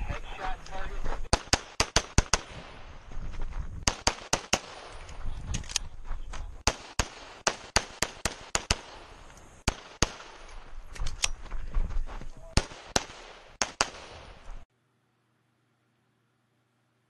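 Rapid pistol shots from a 1911 single-stack handgun, mostly fired in quick pairs with short pauses between strings as the shooter moves through a stage. Near the end the sound cuts off abruptly.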